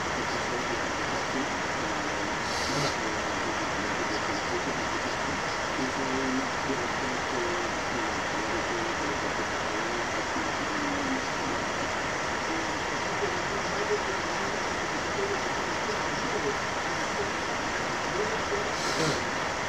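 Steady, even hiss-like noise throughout, with faint, indistinct voices beneath it.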